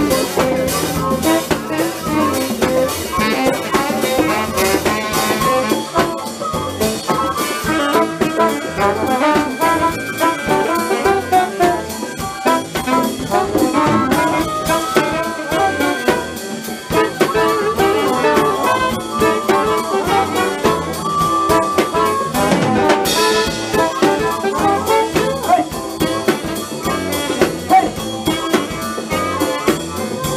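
A live band jamming blues-jazz: a saxophone leads over a drum kit and electric guitar, with no break in the playing. About two-thirds of the way in there is a loud cymbal crash that rings on.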